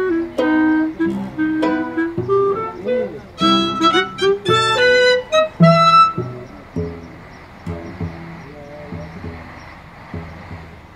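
Improvised trio music on violin, cello and clarinet: short plucked notes, with the violin played pizzicato, build to a bright flurry of high notes in the middle. About two-thirds of the way through, the music drops to soft low notes repeating slowly.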